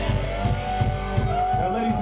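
Live folk-punk band playing loosely between songs: a low beat pulsing about three times a second, with long gliding tones that rise and fall above it.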